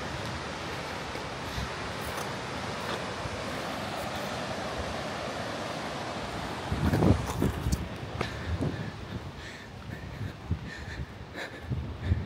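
Steady rush of a rocky mountain river running over rapids. About seven seconds in, a gust of wind buffets the microphone with low rumbling thumps, followed by a few scattered clicks and scuffs.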